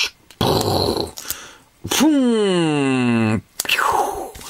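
A short rustle of puffy plastic stickers being handled, then a long, low vocal sound sliding steadily down in pitch for about a second and a half.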